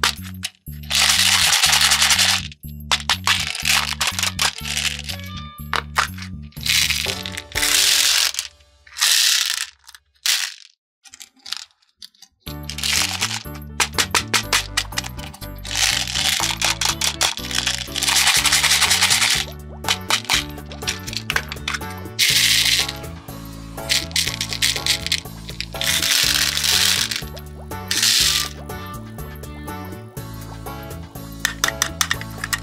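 Small plastic beads rattling inside a lidded plastic cup as it is shaken, and spilling into a plastic tray, in loud bursts of a second or two repeated many times, over background music.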